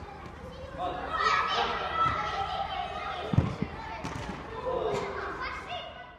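Children's voices echoing in a large indoor hall, with several dull thumps of a football being kicked, the loudest about three and a half seconds in.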